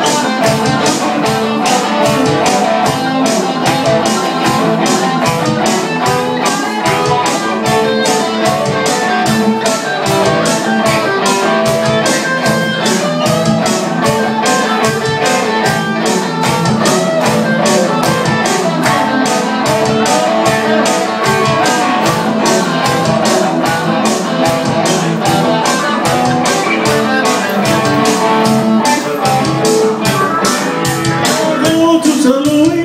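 Live instrumental passage of blues-rock played on two electric guitars over a steady, even beat, with no singing.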